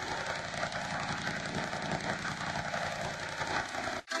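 Heavily distorted, effect-processed audio: a dense, harsh wash of noise with a low rumble underneath. It cuts off abruptly at the end.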